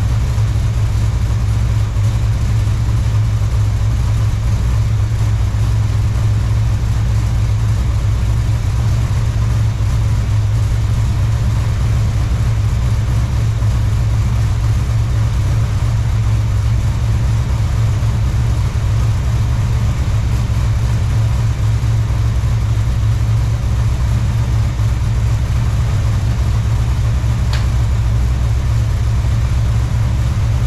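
Small-block Chevy V8 in a 1969 Chevelle idling steadily, with a brief click near the end.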